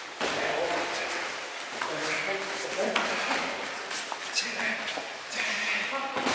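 Indistinct voices in a large, echoing gym hall, with three sharp slaps of sparring strikes landing, about two, three and four and a half seconds in.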